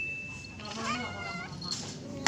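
A cat meowing, one call that rises and falls about a second in, while two cats play-fight. A short steady high tone sounds at the start.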